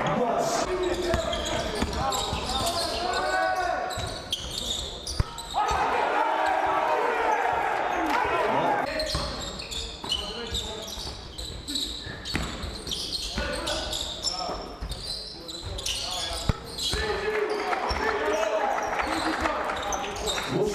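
Live basketball game sound: the ball bouncing on the hardwood court in repeated sharp knocks, with players and coaches shouting on court.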